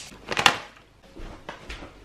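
Kitchen handling noises as mussels are tipped onto avocado toast: a short clatter about half a second in, then a few faint taps.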